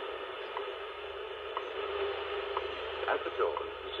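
Shortwave reception of the WWV time station: steady static hiss with a short tick once every second, the station's seconds pulses. A voice starts near the end.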